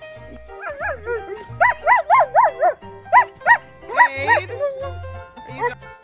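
German Shepherd making a quick run of short whining yips, each one rising and falling in pitch, about eight of them in under three seconds, over background music with a steady beat.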